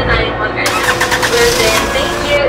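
Toyota sedan's engine cranking and starting, a dense burst of noise lasting a little under two seconds that begins about two-thirds of a second in.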